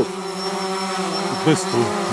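A steady buzzing hum with several held tones, and a brief voice sound about one and a half seconds in.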